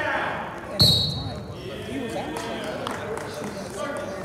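A referee's hand slaps the wrestling mat once, hard, about a second in, calling the fall (pin). A brief high whistle tone sounds at the same moment.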